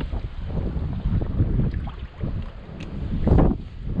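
Wind buffeting the microphone over the sloshing of hands groping in a shallow rock pool, with a louder burst of splashing near the end.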